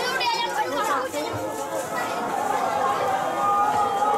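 Chatter of many people in a busy street, with a child's high voice in the first second and a steady held note joining in the second half.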